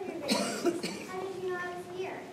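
A cough about half a second in, followed by a child speaking.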